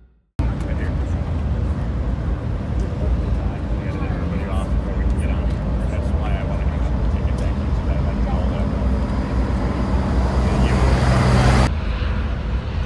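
Harbour-side ambience: a steady low rumble with indistinct voices of people nearby, as a high-speed catamaran ferry comes in to the dock. A low hum grows near the end before the sound cuts off suddenly.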